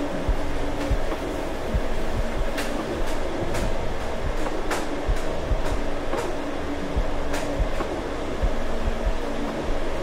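A utensil stirring in a pan on an electric stove, with irregular clinks and scrapes over a steady rumbling noise.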